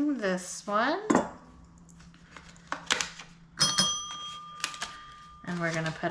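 A small desk call bell struck once about halfway through, its bright metallic ring holding for about two seconds before it fades; the bell is rung to mark a finished scratch-off challenge. Light clicks of card and paper handling come before it.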